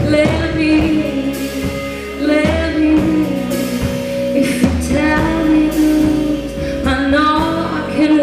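A live soul-rock band playing: a woman's lead vocal over electric guitar, bass and drums.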